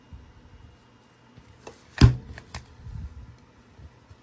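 Thin copper foil rustling and crinkling as it is handled, with one sharp click about halfway through, followed by more small crinkles and knocks as the spot-welding pen is brought up against the copper.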